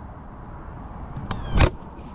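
Flexible aluminium foil dryer vent duct crinkling as it is squeezed in the hand: a small click a little past a second in, then one short, loud crunch about three-quarters through, over a steady low background noise.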